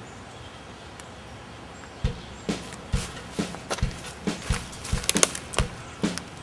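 Footsteps, starting about two seconds in and going at about two steps a second, over a steady background hiss.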